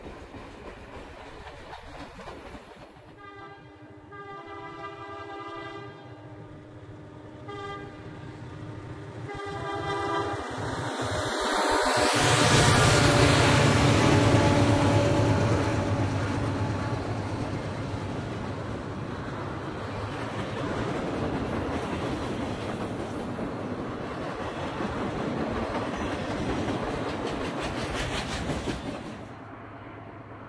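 A diesel freight locomotive's air horn sounds several blasts, the first about three seconds long. The train then passes close by, loudest a few seconds after the horn, and its cars run on with a steady clacking of wheels over rail joints until the sound cuts off near the end.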